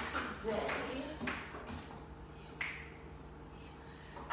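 A woman's voice, soft and broken into brief fragments, over a steady faint hum.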